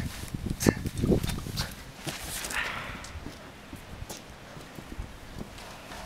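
A few short knocks and scuffs in the first two seconds as a person scrambles, tangled upside down, on metal handrails and paving, with a brief scraping rustle a little later, then quieter background.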